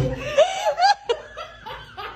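A person laughing in short bursts, loudest in the first second and softer after.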